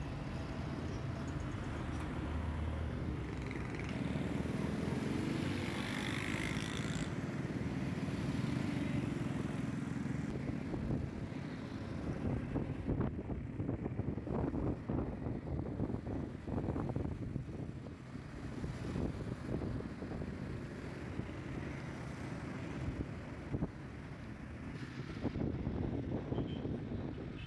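Engine and road noise heard from a moving vehicle: a steady low rumble, with choppy crackling bursts through the middle stretch.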